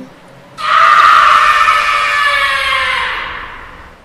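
A loud, high-pitched scream that starts suddenly about half a second in, its pitch sliding slowly down as it fades out over about three seconds.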